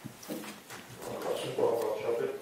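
A person's voice, quieter than the surrounding talk, in short broken phrases.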